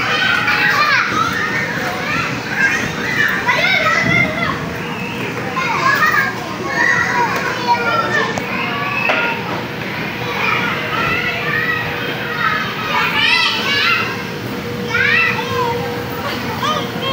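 Many children shouting and squealing at play, high voices overlapping throughout, over a faint steady hum.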